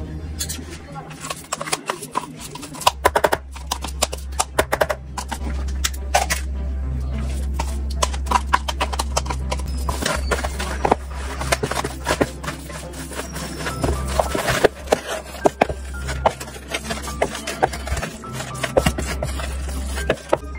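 Wooden spatula stirring a wet filling and knocking against a plastic mixing bowl: a quick, irregular run of knocks and scrapes over a steady low hum.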